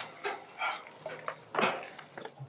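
A dog barking in about five short bursts, the loudest near the end.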